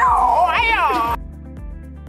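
A man's voice in a loud, drawn-out call that slides up and down in pitch, cut off abruptly about a second in. Quieter recorded music with a steady beat follows.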